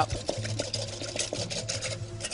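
Cream being whisked in a bowl: a quick, rapid ticking of the whisk against the bowl.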